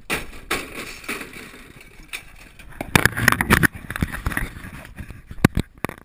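Camera handling noise: a GoPro rubbing and scraping against clothing while it is moved around, loudest about three seconds in, then a couple of sharp knocks near the end.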